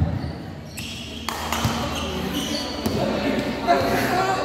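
A basketball bouncing a few separate times on a hard indoor court, with people talking in the hall.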